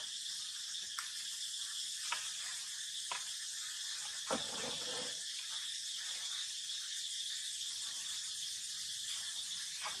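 Steady high-pitched drone of insects, with four soft knocks in the first half, the loudest about four seconds in.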